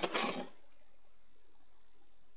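Dry coco-fibre (coir) substrate tipped from a plastic scoop into a clear plastic tub: one short pour, about half a second long, right at the start.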